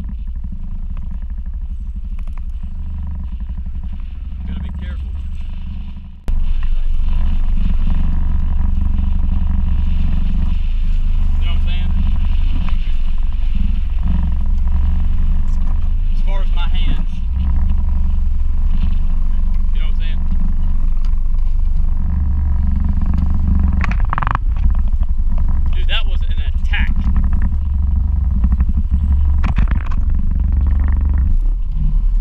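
Steady low rumble of wind buffeting the camera microphone on a moving skiff, with the boat's motor running under it. It gets louder about six seconds in.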